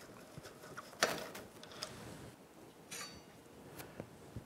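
Socket ratchet clicking faintly as it backs out the mounting bolts of a motorcycle's front brake caliper, with a sharper metal knock about a second in and a short metallic rattle near the end as the caliper comes free of the rotor.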